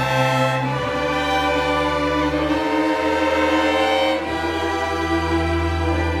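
A student string orchestra of violins, violas, cellos and double basses playing sustained chords over held bass notes, the harmony shifting every second or two.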